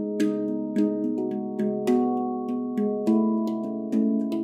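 Sela SE 207 Harmony stainless-steel handpan in C# Kurd tuning, played with the hands: a melodic line of notes struck about every half second, each ringing on and overlapping the next.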